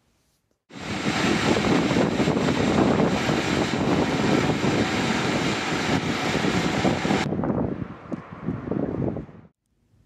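An old corded electric jigsaw running and cutting through a plywood board, a dense steady rasp of the blade with a faint high whine from the motor. About seven seconds in the sound turns duller and quieter, and it stops shortly before the end.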